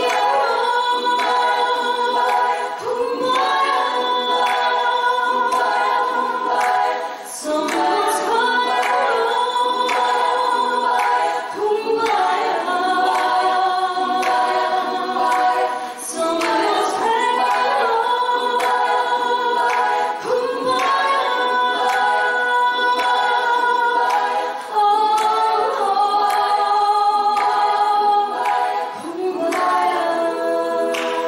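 Women's choir singing a cappella in several-part harmony through microphones, in phrases of about four seconds with brief breaks between them.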